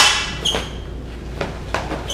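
Combat lightsaber blades, hollow polycarbonate tubes, clashing: a sharp crack right at the start with a brief ringing, a second strike about half a second later, then a couple of fainter knocks.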